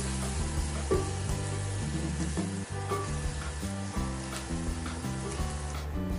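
Chopped garlic and onion sizzling steadily in melted butter in a stainless steel frying pan, stirred with a silicone spatula, as the aromatics sauté and the garlic turns toasty. Background music plays underneath.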